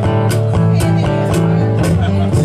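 A band jamming, guitar to the fore, over sustained low notes and a steady beat of about two hits a second.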